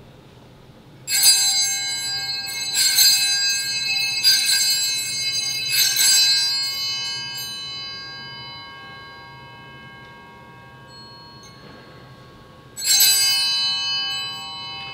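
Altar bells (Sanctus bells) rung at the elevation of the host during the consecration of the Mass. They are struck four times in quick succession and ring on, slowly fading, then rung once more near the end.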